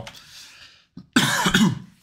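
A man coughing once, a short, loud burst about a second in.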